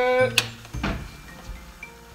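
A person's voice exclaiming with rising pitch, cut off by a single sharp knock, then faint background music.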